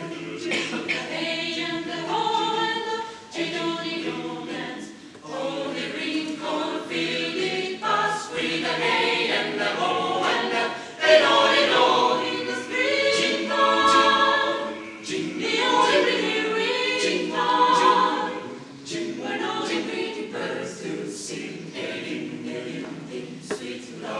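Mixed chamber choir of women's and men's voices singing a cappella in several parts, the phrases rising and falling in loudness.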